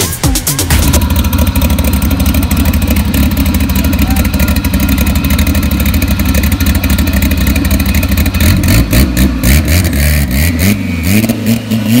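Turbocharged VW AP four-cylinder in a drag-race VW Gol idling loudly through a short side-exit exhaust. Near the end it is blipped, its pitch rising and falling several times.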